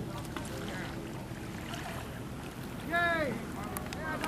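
People's voices in the background over a steady low rumble, with one loud, drawn-out voiced call about three seconds in.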